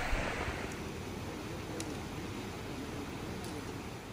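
Steady rush of floodwater pouring over a dam spillway, fading out near the end.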